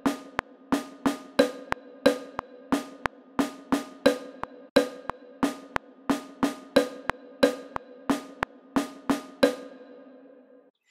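A snare drum and a higher-pitched wood block play two interlocking eight-step rhythms, repeated four times: the snare plays W's binary code 01010111 and the wood block plays A's 01000001. The strikes come at a steady pace, each one short and ringing briefly, and they stop shortly before the end.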